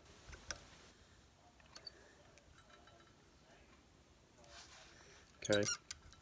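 Small metal handling sounds as a fly hook is set in a tying vise: one sharp click at the start, then a few faint ticks over low room noise.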